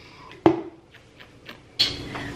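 A plastic shaker bottle set down on a kitchen countertop: one sharp knock with a short ring about half a second in, a few faint ticks, then a second, brighter clatter near the end.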